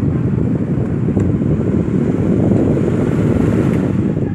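Britania Protect 30 Six desk fan running, its six-blade propeller blowing straight onto the microphone: a loud, steady, low rush of wind noise.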